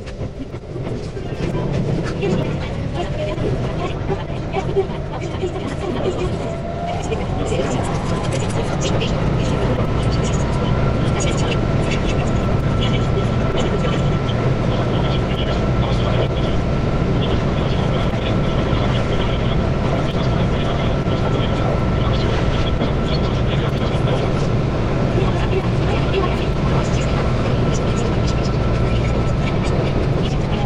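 Keihan 8000 series electric train running, heard from the front car. A motor whine rises in pitch over the first ten seconds or so and then holds at one steady pitch, over a constant rumble of wheels on the track.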